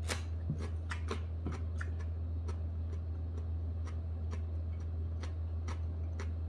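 Crunchy close-up chewing of a raw green chili pepper, with irregular crisp clicks about two or three a second, over a steady low hum.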